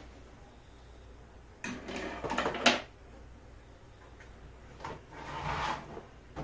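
Plastic parts knocking and scraping as a 3D-printed hive entrance piece is pushed into place on the hive body. A burst of rubbing ends in a sharp click about two and a half seconds in, and a shorter click and a scrape come near the end.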